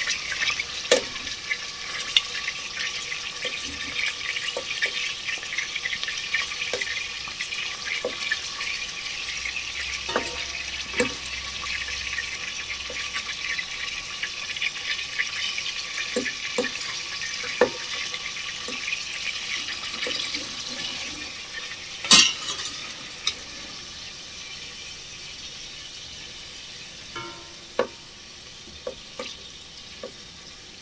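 Chunks of beef sizzling in hot oil in a stainless steel stockpot as they are seared to seal them, with scattered knocks and scrapes of a wooden spoon against the pot as the meat is turned. One sharp knock comes about two-thirds of the way through, and the sizzle grows quieter after it.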